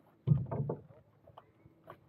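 A few quick knocks and rattles in the first second on a small sailing dinghy's hull and rigging, heard close up through the hull, then faint scattered clicks near the end.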